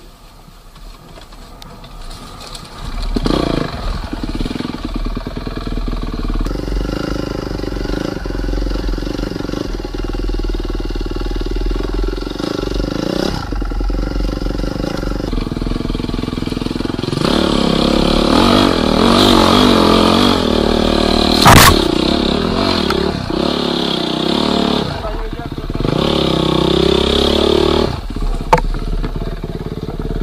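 Husqvarna enduro motorcycle engine heard onboard, running under load and revving up and down, much louder from about three seconds in. A single sharp knock about two-thirds of the way through is the loudest moment.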